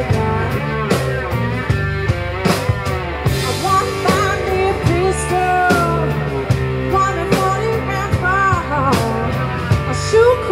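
Live blues-rock trio playing: electric cigar box guitar with electric bass and a drum kit keeping a steady beat, the guitar or voice bending up and down in pitch.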